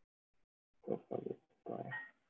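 Three short, rough vocal sounds from a person, starting about a second in, with no clear words.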